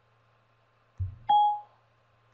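A low thump about a second in, then a single short beep from the iPad as dictation stops listening.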